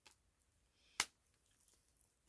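A single sharp click about a second in, as a deck of tarot cards is handled, with a faint tick at the start; otherwise quiet.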